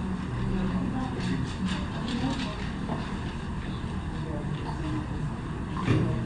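Muffled, indistinct voices over steady background noise.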